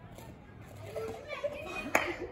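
Distant voices of children and others calling out, rising in from about halfway through after a quiet start, with one sharp click just before the end.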